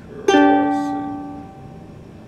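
A single chord strummed on a ukulele about a quarter second in, left to ring and fade away over about a second and a half.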